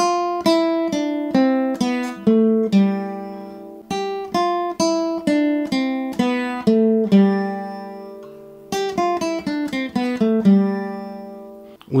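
Nylon-string classical guitar played fingerstyle: single notes plucked one at a time on the top three strings (G, B and high E), running up and down in pitch. A few of the lower notes are left to ring.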